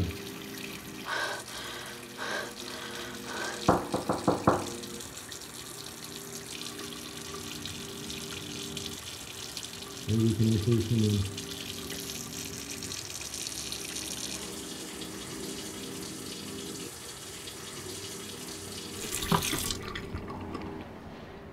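Bathroom faucet running steadily into a sink. A short run of sharp clicks comes about four seconds in, and a louder low sound around ten seconds in.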